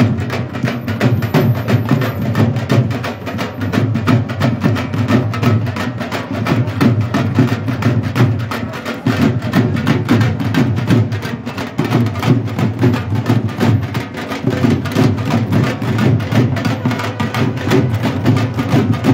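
A large group of dhol drums played together with sticks in a fast, continuous beat.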